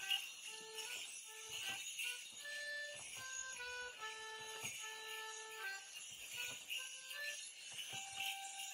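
A Morris dance tune played on a single melody instrument, note by note, over the steady jingling of dancers' leg bells, with a few sharp clicks.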